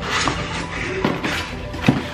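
Cardboard shipping box being handled and pulled open, its flaps rustling and scraping, with a sharp knock near the end. Background music underneath.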